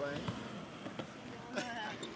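Faint background voices and chatter, with a single light click about a second in.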